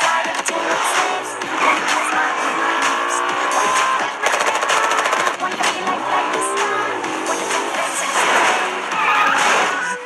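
Car engine revving, its pitch climbing several times, with tyres squealing, over loud background music.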